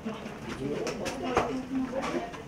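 Indistinct voices of several people talking over one another, with a few light knocks about halfway through.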